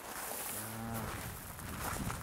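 A person's voice: one short, low, steady hum-like sound lasting about half a second.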